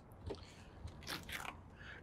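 Faint clicks and scrapes from an RV's hinged exterior compartment door being handled and swung open, a few sharp crackles just over a second in.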